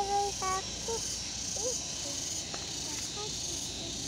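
Steady high-pitched drone of insects, with a few brief voice sounds scattered through.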